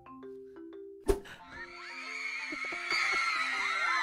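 A single hand slam on a desk about a second in, over light marimba-like background music. After it a high, wavering sound rises and holds.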